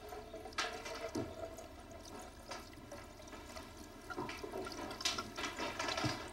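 Liquid being poured into a small glass bottle through a glass funnel, with a few light clinks of glass, more of them after about four seconds.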